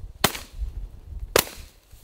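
Two shotgun shots about a second apart, fired at a flushing rooster pheasant.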